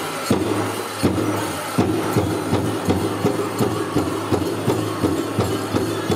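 Powwow drum struck in unison for a chicken dance song: the strikes come slowly for the first two seconds, then settle into a quick steady beat of about three a second.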